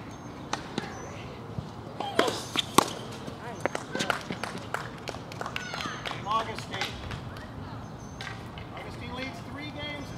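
Tennis ball struck by rackets and bouncing on a hard court during a rally: a run of sharp hits, the loudest just before three seconds in, with short voices around them.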